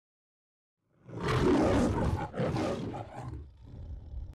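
Lion roaring: the MGM logo roar, starting about a second in, with two roars and the second one fading out near the end.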